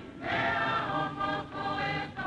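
A choir singing held chords, changing to a new chord about halfway through.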